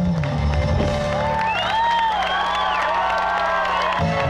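Live rock band playing, heard from within the crowd. Shortly in, the beat drops out to one held low note while high lead lines bend up and down over it.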